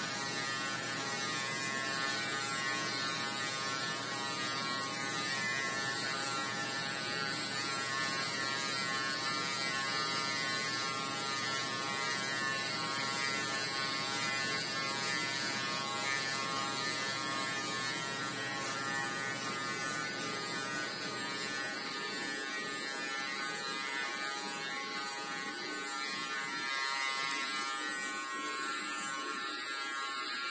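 Cordless electric dog hair clipper running with a steady buzz as it clips through thick curly fur.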